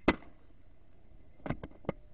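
A .22 air rifle firing once, a single sharp crack, at a pigeon. About a second and a half later come three quick clicks.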